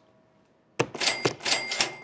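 Cash register sound effect, starting just under a second in: a rapid clatter of mechanical keys with a bell ringing through it.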